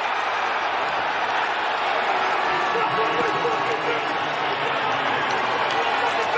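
Steady noise of a large stadium crowd after a touchdown, heard through the TV broadcast, with faint voices mixed in.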